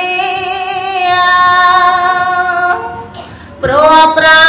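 A woman chanting Khmer smot, Buddhist devotional verse sung without accompaniment, holding one long wavering note. About three seconds in the note fades into a short breath pause, and she opens the next phrase just before the end.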